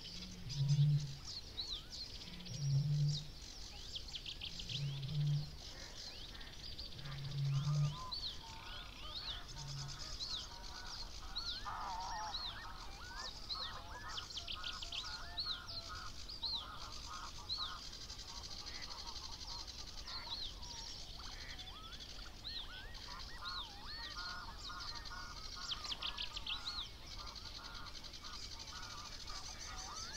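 Eurasian bittern booming: a series of about five deep, low booms roughly two seconds apart in the first ten seconds, the last one fainter. Songbirds of the dawn chorus sing high throughout, with a busier chattering song joining from about eight seconds in.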